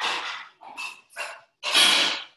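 A dog barking four times in quick succession, the last bark the loudest.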